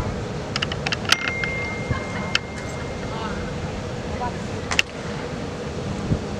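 Outdoor sideline ambience at a football field: wind on the microphone and distant, indistinct voices, with a quick cluster of sharp clicks about a second in and two more single clicks later. A faint, thin, steady high tone runs through the middle of the stretch.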